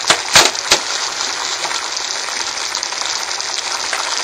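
Octopus and tomato sauce sizzling in a pan on the stove, the octopus cooked through: a steady crackling hiss, with two sharp clicks in the first second.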